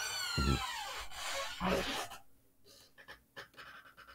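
A man laughing breathily, a high-pitched sound that falls in pitch over about two seconds, with a short 'mm-hmm' about half a second in. After it come a few faint clicks.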